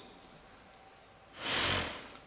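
A man's sharp breath in through the nose at the lectern microphone, one short noisy intake lasting about half a second, near the end.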